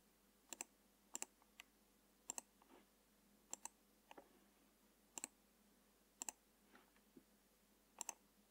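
Near silence broken by faint clicks of a computer mouse, about a dozen in all, many in quick pairs.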